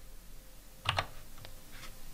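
Computer keyboard keystrokes: a few sharp key clicks close together about a second in, then a couple of fainter taps. These are the last keys of a terminal command and the Enter key that runs it.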